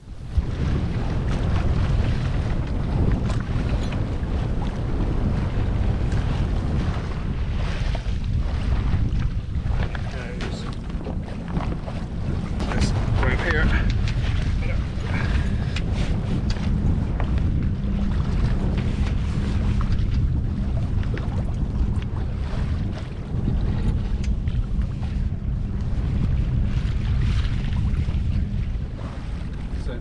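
Wind buffeting the camera microphone on a sailboat's deck as a steady low rumble, with scattered small knocks and rustles of rope being handled at the boom.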